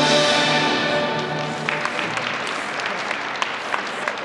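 Recorded figure-skating program music ending on a long held chord, with audience applause breaking out about two seconds in as the music stops.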